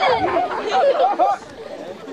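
Speech: people talking, with the voices dropping away about two-thirds of the way through.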